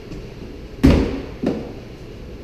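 A hard thump about a second in, then a smaller knock half a second later: a child hitting the push button or panel of a museum exhibit box.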